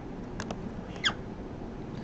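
A few faint, short clicks, two close together and one about a second in, over a steady low hum and hiss from the recording microphone.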